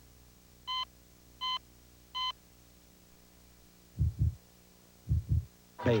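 Three short electronic beeps about three-quarters of a second apart, then a heartbeat sound effect: two pairs of low, muffled thumps, over a faint steady hum.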